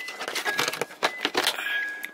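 Plastic clicks and rattles of a car's dashboard fuse box cover being gently pried off by hand. A faint electronic tone repeats about every half second, alternating between two pitches.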